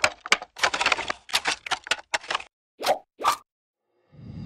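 Cartoon-style pop and click sound effects for an animated logo: a quick, uneven run of short pops, then two short pitched blips near the end, the second higher than the first.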